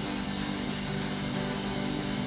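A congregation clapping and applauding, a dense steady patter of many hands, over a chord held steadily by the worship band.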